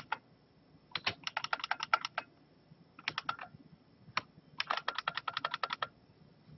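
Computer keyboard typing in quick bursts of keystrokes with short pauses between them. There is a run of about a dozen keys about a second in, a few more around the middle, and a long, fast run near the end.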